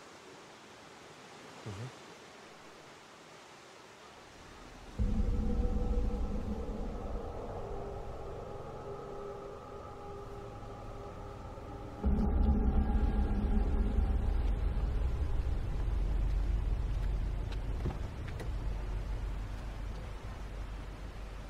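Ominous droning film score: a deep rumble with long held tones comes in suddenly about five seconds in and surges heavier again about halfway through, then slowly eases. A short cough comes before it.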